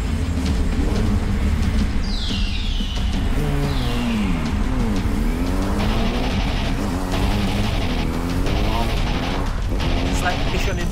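Motorcycle engine revving, its pitch dropping and climbing again near the middle, over film-score music with a heavy bass.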